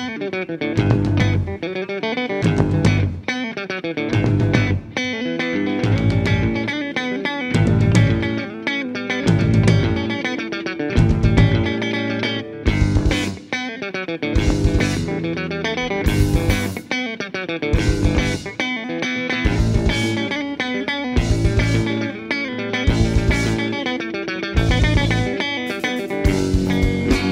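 An instrumental rock trio playing live: electric guitar, electric bass and drum kit, with no vocals. The bass and drums hit in short, separate stabs under the guitar.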